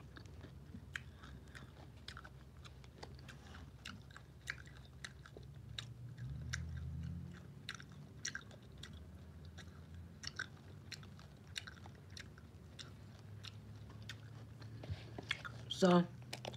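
A person chewing crackers close to the microphone: a steady scatter of small crisp crunches and mouth clicks, with a louder crunch right at the end.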